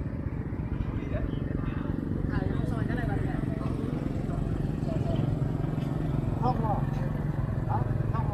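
A small motorbike engine idling steadily, with people talking faintly in the background.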